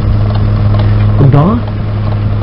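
A steady, loud low hum with hiss under an old tape recording, and a child's voice speaking briefly just past the middle.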